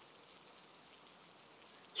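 Faint, steady hiss with no distinct events: a background ambience bed.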